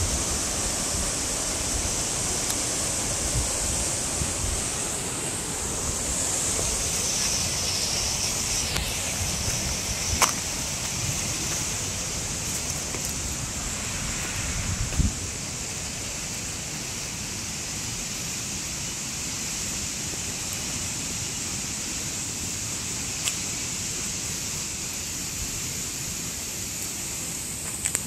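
Steady rush of a shallow river running over rock, with a small waterfall upstream, heard as an even hiss. Low rumble sits under it in the first half. A sharp knock comes about ten seconds in and a thump about fifteen seconds in, after which the rush is a little quieter.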